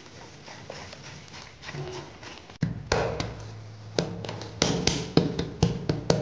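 Faint sounds of hands working dough in a bowl, then from about two and a half seconds in, louder sharp taps of hands patting and slapping a lump of dough on a countertop, over a low steady hum.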